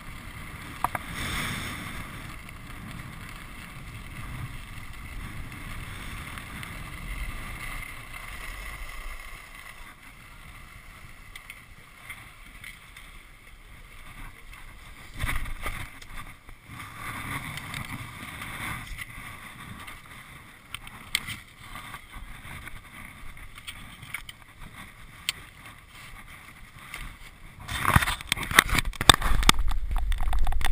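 Skis sliding over packed snow, with air rushing over a chest-mounted camera in its housing. The noise is steady, then dies down after about ten seconds as the skier slows to a stop. Near the end come loud rustling and knocking, as a jacket rubs against the camera.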